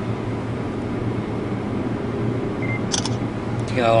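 A smartphone camera's shutter sound, a short sharp click about three seconds in, over a steady low background hum.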